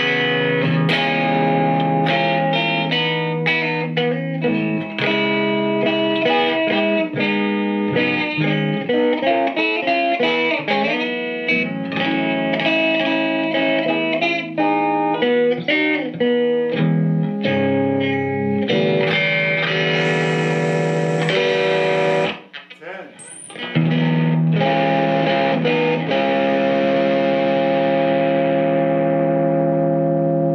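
Electric guitar played through an Alamo Fury tube amplifier with a 15-inch speaker, its volume at about seven: runs of single notes and chords. A brief gap a little past the two-thirds mark, then a long chord left ringing and slowly fading.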